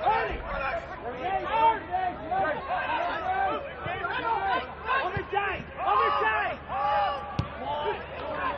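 Voices talking throughout, with one sharp knock near the end.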